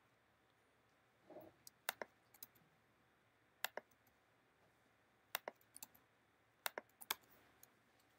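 Computer keyboard keystrokes in a few short clusters of sharp clicks, separated by pauses, as lines of code are edited.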